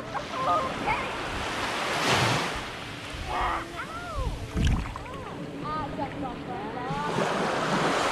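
Small waves washing up and lapping on a sandy beach, swelling about two seconds in and again near the end, with a low thump about halfway through.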